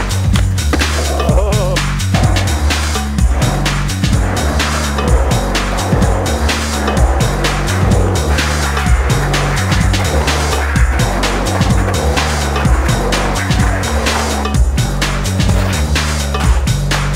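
Music with a repeating bass line, mixed with skateboard sounds: wheels rolling on concrete and the board's knocks and landings.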